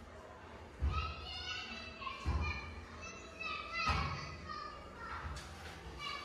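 Children's voices shouting and calling as they play, with three dull thumps about one, two and a half, and four seconds in.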